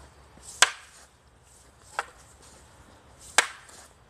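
Long wooden staffs clacking together in a paired staff drill: three sharp strikes about a second and a half apart, the middle one weaker.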